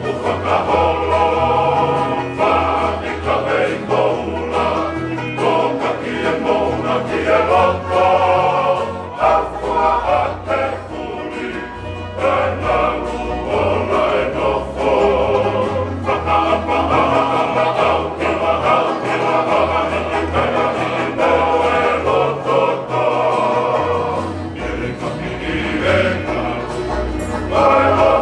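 Tongan kalapu string band: a male choir singing in full harmony to strummed acoustic guitars, with low bass notes underneath.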